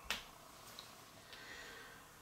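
A single short tap as a rubber O-ring is set down onto paper on a tabletop, then faint handling sounds.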